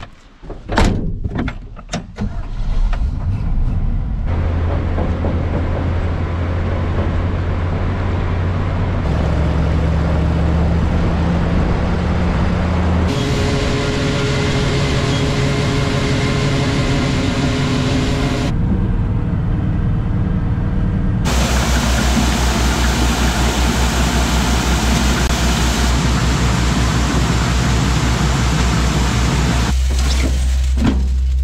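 Grain truck's engine running under way on gravel and dirt roads, its sound changing abruptly several times. A few sharp knocks come in the first two seconds, and from about two-thirds of the way through it runs with an even, fast low pulse.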